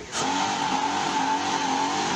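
A fire truck's engine running hard with a steady droning whine over a constant loud hiss, cutting in abruptly just after the start.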